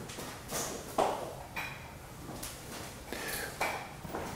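Several light metallic clinks and knocks spread over a few seconds, some with a brief ring, as metal sampling equipment is handled and set down on a table.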